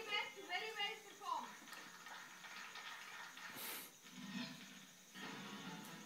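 Television programme audio played through a TV's speaker: a voice speaking for the first second or so, quieter sound with a brief hiss about three and a half seconds in, then voice again near the end.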